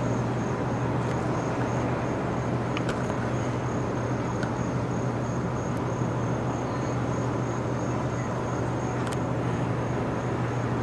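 A steady low mechanical hum over a wash of outdoor noise, like an engine or machinery running. A faint high trill pulses about three times a second over it, and there are a few faint clicks.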